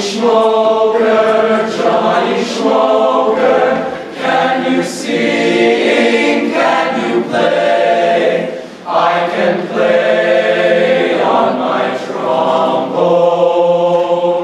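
Male choir singing a cappella in full chords, in phrases broken by short breaths about every four seconds.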